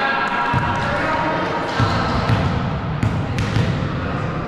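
A volleyball bouncing a few times on a gym floor, sharp knocks about half a second apart, with voices in the hall.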